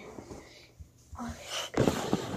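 A child's brief "oh", then a sudden rustling bump close to the microphone as the phone recording the scene is grabbed and handled.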